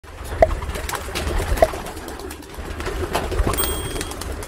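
Racing pigeons cooing, with two clear short calls in the first two seconds over a steady low rumble; a brief thin high tone sounds near the end.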